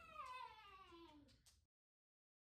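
A cat giving one long meow that holds and then slides steadily down in pitch, cut off suddenly about three-quarters of the way through.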